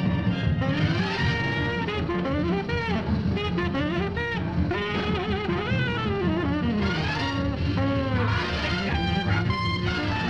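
Small jazz combo playing fast, up-tempo jazz: a horn plays quick, bending melodic runs over drums and upright bass.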